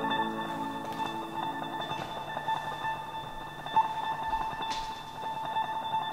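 Quiet instrumental passage of an indie rock song: plucked guitar notes over steady, held ringing tones, with no drums or vocals.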